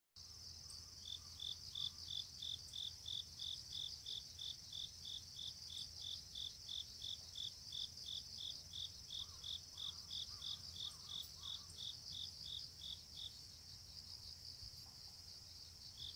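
Insects, crickets, chirping in a garden: one steady high trill runs under a second insect's rhythmic chirps, about three a second, which drop out near the end.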